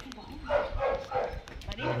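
Dogs barking in a few short calls, mixed with people's voices.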